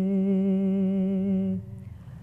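A man's voice singing one long held note with a slight vibrato, drawing out the last syllable of a manqabat line. The note breaks off about one and a half seconds in.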